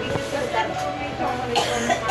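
Indistinct talk of people in a room, with a short, sharp noisy burst near the end.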